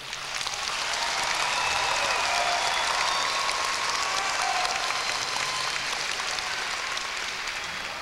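Audience applauding, with a few voices calling out over it; the clapping swells in the first second, holds, then slowly tapers off.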